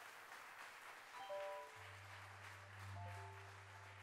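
Quiet, sparse organ playing: a soft held chord comes in about a second in, a steady low bass note joins shortly after and sustains, and a second chord sounds at about three seconds.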